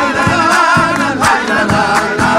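A group of men singing together in chorus, backed by strummed acoustic guitars, violins and a caja drum struck in a steady beat.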